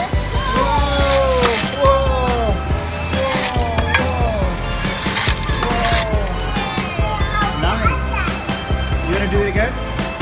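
Die-cast toy cars rolling and clattering down a multi-lane plastic drag-race track, with scattered sharp clicks, under background music.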